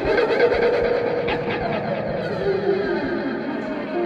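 Recorded band music: guitar with a voice over it, a held note about a second in, then falling lines.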